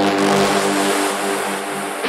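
Techno track with sustained, droning synth tones under a hissing noise wash, easing off slightly toward the end, with no clear kick-drum beat.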